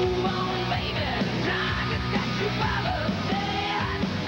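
Hard rock music with a loud lead vocal over a full band.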